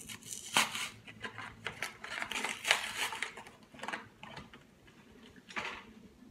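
Plastic blister pack of Shoe Goo tubes being handled and opened: crinkling and rustling in several short clusters, quieter for a moment near the end before a last rustle.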